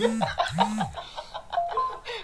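Laughter, with two short low swooping notes and a burst of hiss in the first second, like a sound effect. Two brief high beeps follow near the end.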